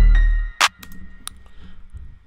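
Hip-hop beat playing back from FL Studio: a heavy 808 bass under a synth keyboard melody. It cuts off about half a second in, and a single sharp hit follows, with a faint fading tail after it.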